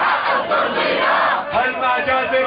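A large crowd of protesters shouting together, a dense mass of voices, which breaks into a chanted slogan about one and a half seconds in.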